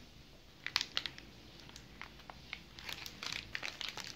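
Plastic wrapper of a snack bar crinkling in the hand while the bar is bitten and chewed: scattered small crackles and clicks, busier in the second half.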